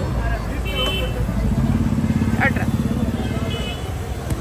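Motorcycle engine running close by, louder for a couple of seconds in the middle, with street chatter around it.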